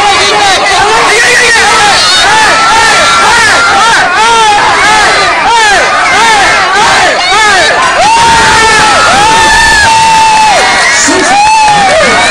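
A fight crowd of spectators shouting and yelling, many voices overlapping at once, with a couple of long held shouts about two-thirds of the way through.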